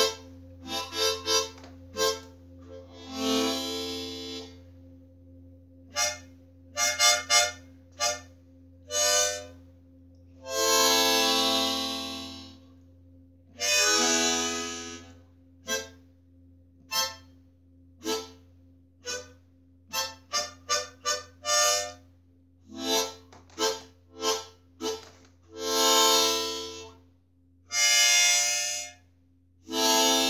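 Harmonica in A minor playing a slow, halting tune of short, separated notes and a few longer held ones, with pauses between phrases, over a faint steady low hum.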